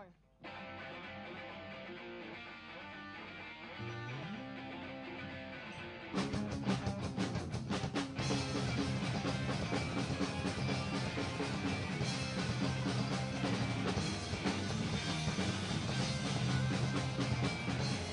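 Live skate-punk band starting a song: an electric guitar plays the intro alone, a rising slide in the low notes comes in about four seconds in, then drums and the full band come in loud about six seconds in and keep playing.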